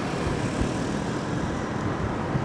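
Steady engine and road noise from a motorbike ride through light scooter traffic.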